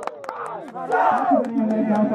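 Volleyball spectators shouting and cheering as a rally ends, with a few sharp claps or smacks. About a second in comes one more loud shout, and a steady droning tone sets in about halfway.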